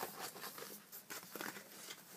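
A large paper poster rustling and crinkling in the hands as it is rolled up, in faint, irregular crackles.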